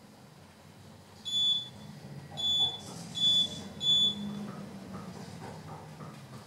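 Four short, high electronic beeps from the elevator car's signal, about a second apart, over the low hum of the Richmond traction elevator car travelling between floors.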